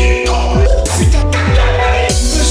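Hardtek electronic music played live on a dualo electronic accordion and a Launchpad: a fast, regular kick drum under sustained synth notes, with bright noisy accents about a second in and near the end.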